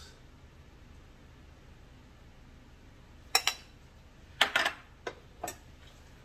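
Kitchen utensil clinking and tapping against dishware during plating: about five short, sharp clinks in the second half, after a quiet first few seconds.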